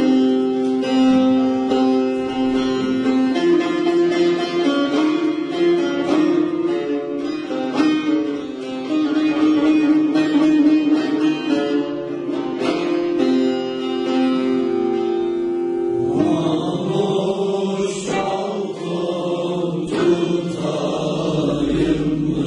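A bağlama (long-necked Turkish saz) playing a plucked folk melody with ringing, held notes. About 16 seconds in, a group of young male voices joins in, singing together over it.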